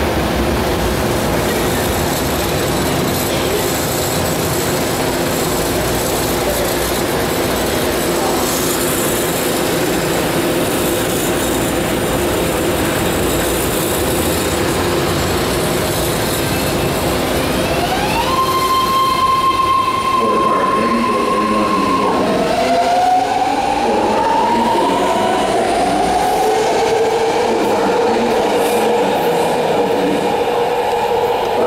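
BART train pulling out of an underground station: a steady rumble of motors and wheels, then, about 17 seconds in, an electric propulsion whine that rises and holds high. It drops after a few seconds and gives way to further rising tones as the train picks up speed.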